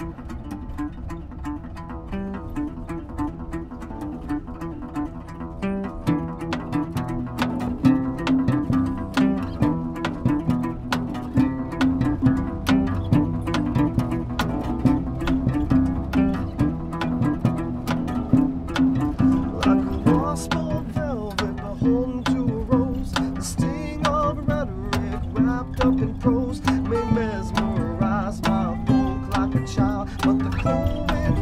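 Instrumental acoustic band music: plucked acoustic guitar over a plucked bass line, with a steady rhythm and no singing.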